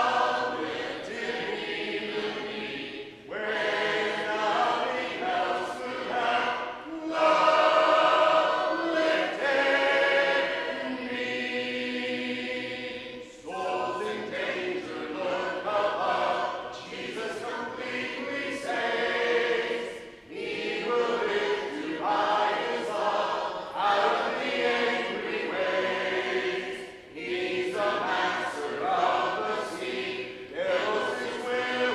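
Congregation singing a hymn a cappella, with no instruments, in phrases a few seconds long with brief breaths between them.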